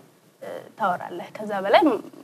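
Speech: after a brief pause, a voice talks on, drawing out a syllable that rises and falls in pitch near the end.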